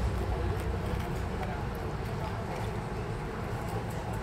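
Café background: indistinct chatter from other people, a steady low rumble and scattered light clicks.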